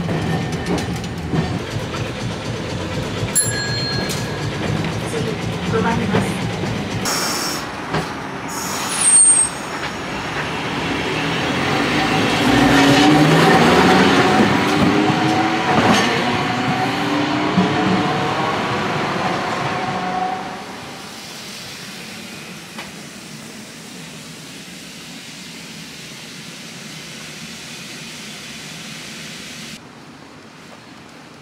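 Nagasaki streetcar: a steady low running hum from inside the car, then, after a cut about seven seconds in, a tram going by outside, growing louder with tones sliding up and down in pitch and loudest near the middle. About twenty seconds in it gives way to a quieter steady street noise.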